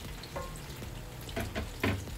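Ripe plantain slices frying in hot oil in a pan, a steady sizzle. A few short sharp knocks cut through it, the loudest near the end, as the wooden stirring spoon is lifted from the pot of syrup and set down.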